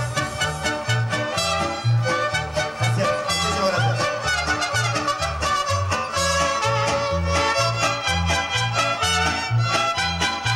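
Live mariachi band playing an instrumental passage: violins carry the melody over strummed guitars and a steady bass beat about twice a second.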